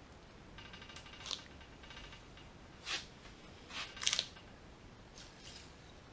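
Ratchet turning the forcing screw of a harmonic balancer installation tool on an LS1 crankshaft snout, pressing the crankshaft timing gear on: a run of fine ratchet clicks starting about half a second in, then several short, sharp metallic scrapes as the screw is pulled round under load, the loudest about four seconds in.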